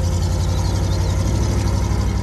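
A GAZ truck's engine running at idle, a steady low rumble.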